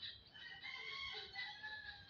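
A rooster crowing once: one faint, long call that starts about half a second in and dips slightly in pitch as it ends.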